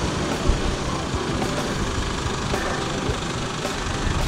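New Holland 7630 tractor's diesel engine running steadily as it drives along the street towing a trailer.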